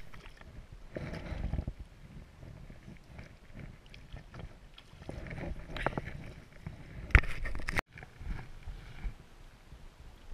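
Water splashing and sloshing as a trout thrashes in a landing net at the water's edge, in irregular splashes, the loudest about seven seconds in and then cut off abruptly.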